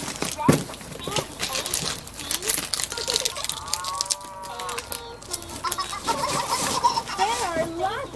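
Rattling and rustling of a baby stroller's fabric and its hanging plastic toys as small monkeys clamber in it, with short knocks throughout. Chickens cluck in the background, with a longer arching call about halfway through.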